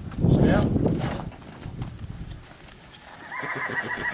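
A horse's hooves knock on the trailer floor as it backs down out of a stock trailer, loudest in the first second. Near the end a horse whinnies briefly.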